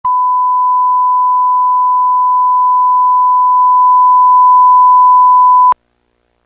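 Steady 1 kHz line-up test tone played with colour bars, the reference for setting audio levels at the head of a tape. It cuts off suddenly with a click near the end.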